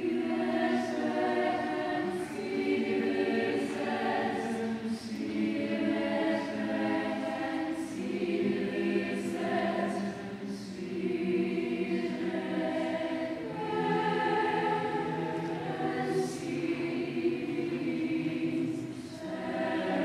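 Large mixed choir of women's and men's voices singing, holding chords that shift every second or two, with the singers' consonants audible as crisp hisses.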